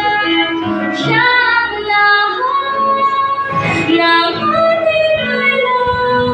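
Children's choir singing a Tagalog song in unison, with sustained melodic notes over instrumental accompaniment.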